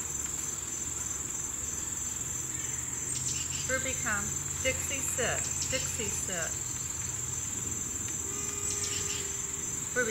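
Insects droning steadily at a high pitch, with a run of short gliding chirps in the middle, from about three to six and a half seconds.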